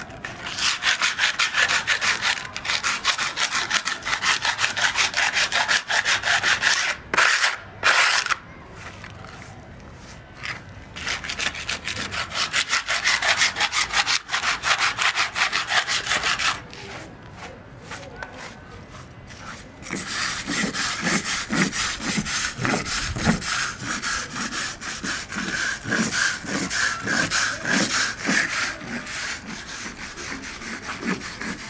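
Metal scraper blade scraping loose plaster and grit off a concrete roof surface in rapid short strokes, coming in three long bursts with brief pauses between. In the last stretch the strokes turn lower and more rhythmic, as a wire brush scrubs the surface.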